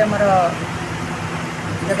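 A woman's voice speaking, which stops about half a second in, leaving a steady low background hum for over a second before speech resumes near the end.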